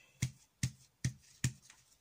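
Four light taps of a round alcohol-ink blending tool dabbed onto Yupo paper, a little under half a second apart.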